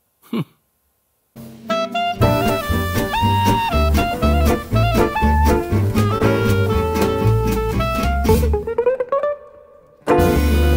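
Small jazz swing combo playing: an archtop electric guitar picks out a melody over low bass notes and a drum kit. It starts about a second and a half in and fades out near the end.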